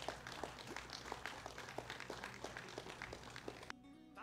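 Faint audience applause, scattered claps thinning out. It is cut off abruptly near the end by music with a held sung note.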